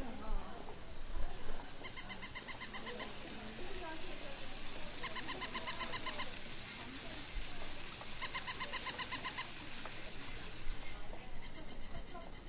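Battery-powered toy giving off an electronic chirping trill: a rapid run of about nine high beeps a second, lasting about a second, repeated four times at even three-second intervals over faint street voices.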